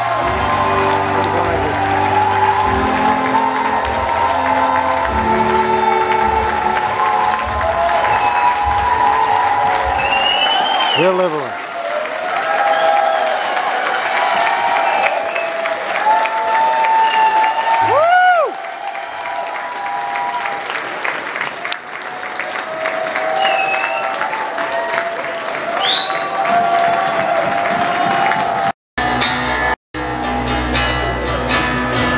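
Live band music played through a concert hall PA, heard from within the crowd, with applause and crowd voices mixed in. The bass drops out about ten seconds in, and a few short swooping sounds cut through. The recording cuts out briefly twice near the end.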